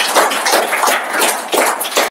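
A small audience applauding: a handful of people clapping at once, a dense run of claps throughout.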